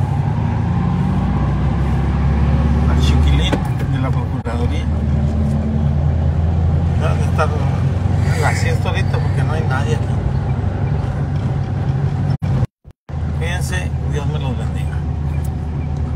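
Car engine and road noise heard from inside the cabin while driving, a steady low rumble; the sound cuts out briefly about three-quarters of the way through.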